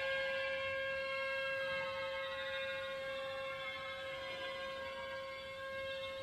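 Soft orchestral music: one note held steadily throughout, with fainter instrumental lines shifting above it.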